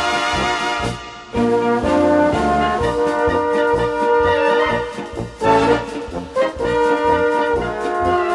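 Bohemian-style brass band playing an up-tempo instrumental: the horns hold chords over a bouncing bass, with a short break about a second in.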